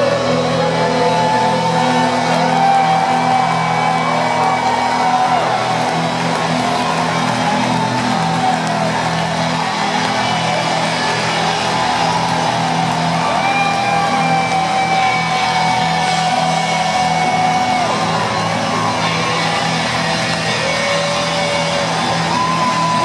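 Live rock band playing loud through a stadium PA, heard from the stands, with electric guitars and held sung or played melody notes over a steady bass, and the crowd whooping and shouting along.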